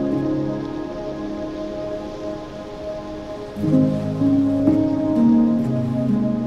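Slow ambient music of long held notes over a steady hiss. A louder swell of new notes comes in a little past halfway.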